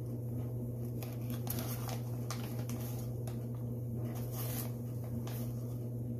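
A man biting and chewing a strip of beef jerky: scattered short wet, tearing mouth sounds over a steady low hum from a clothes dryer running.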